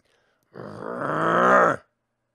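A man's voice imitating a beast's growl: one drawn-out growl of about a second that grows louder and rises in pitch, then cuts off.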